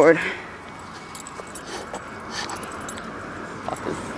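A skateboard being handled by hand, with a few light clicks and rattles over a steady low background hiss.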